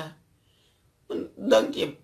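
A spoken voice: a pause of about a second of near silence, then the voice starts speaking again.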